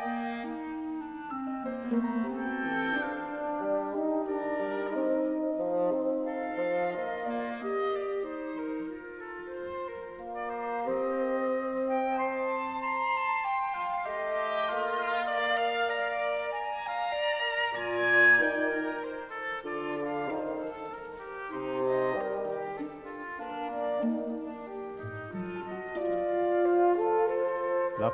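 Orchestra playing slow, overlapping held notes in several parts, with a brief swell about two-thirds of the way through.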